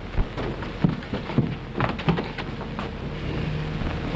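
Irregular soft knocks and shuffling noises over the steady hiss of an old film soundtrack.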